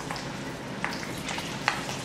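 Whole green chillies frying in hot oil in a kadhai: a steady sizzle with a few sharp pops, as a slotted steel spoon turns them.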